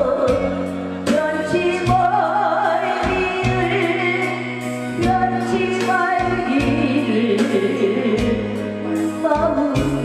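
A woman singing a Korean trot song into a microphone with a strong wavering vibrato, over an instrumental accompaniment with sustained bass notes.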